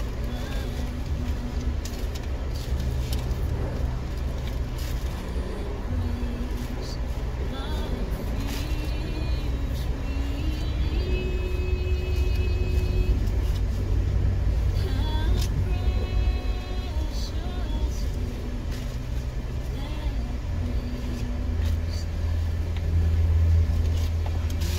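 Car engine idling, heard from inside the stationary car's cabin as a steady low rumble that grows louder near the end. Faint voices sound in the background.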